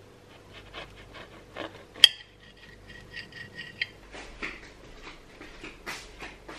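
A knife scraping through the skin of a roasted potato in soft strokes, then striking the ceramic plate about two seconds in with a sharp clink that rings on for nearly two seconds before it is stopped by a second tap. A few more soft knife-on-plate scrapes follow.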